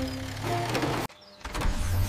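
Cartoon robot-transformation sound effect: a motorised mechanical whir as a fire truck turns into a robot. It breaks off sharply about a second in and starts again half a second later.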